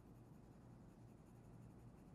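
Very faint scratching of a coloured pencil lightly shading on paper, barely above room tone.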